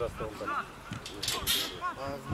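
Men's voices shouting and calling out during football play, with two short hissing sounds a little past the middle.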